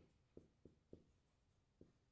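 Marker writing on a whiteboard, faint: five short strokes, four in quick succession in the first second and one more after a pause near the end.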